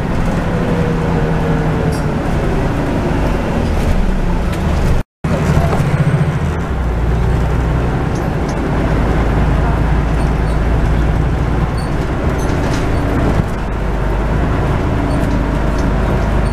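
Interior sound on the upper deck of a Scania N94UD double-decker bus under way: steady diesel engine hum and road noise, with a whine falling in pitch over the first few seconds and the engine note growing deeper and stronger after about six seconds. The sound cuts out for a split second about five seconds in.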